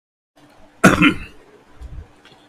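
A man clears his throat with one short, loud cough about a second in.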